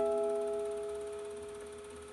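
Acoustic guitar's final notes ringing out and slowly dying away at the close of a song, with no new notes played.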